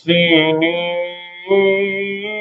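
A man's voice reciting the Quran in melodic tajweed chant, holding long notes. The first phrase trails off about a second in, and the next begins at about one and a half seconds.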